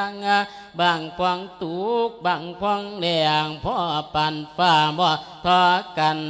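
A male Buddhist monk's voice singing an Isan-style chanted sermon (thet lae). It comes in long drawn-out phrases with a wavering, sliding pitch, broken by short breaths.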